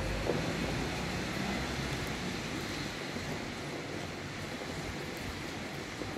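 Rain coming down in gusty wind, a steady hiss. Wind buffets the microphone with a low rumble that is strongest in the first half and eases about halfway through.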